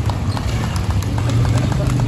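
Motorcycle engines running at low revs as bikes roll slowly past, a loud low note that pulses unevenly, with voices in the background.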